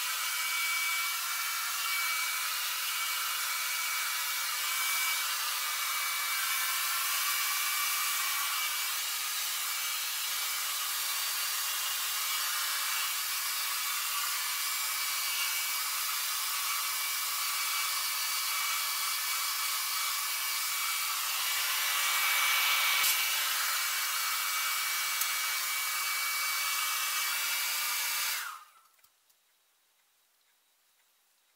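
Handheld hair dryer blowing steadily, a rush of air with a thin high whine from its motor; it cuts off suddenly near the end.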